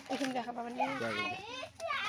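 A young child talking in a high-pitched voice.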